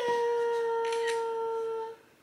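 A voice holding one long steady note, a hum or 'ooh', for nearly two seconds. It slides down slightly at the start and cuts off near the end.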